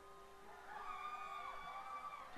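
A quiet lull in a guitar-led song: a held guitar note fades away, while faint wavering high tones come and go in the second half.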